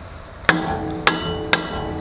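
Three hammer strikes on metal, about half a second apart, each leaving a short metallic ring.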